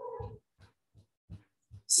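A short, quiet voiced sound lasting under half a second, then a few faint ticks.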